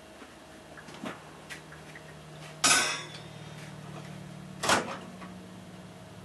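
Glass pie pan and microwave door being handled: a light click, then two loud short clattering knocks about two seconds apart, over a low steady hum.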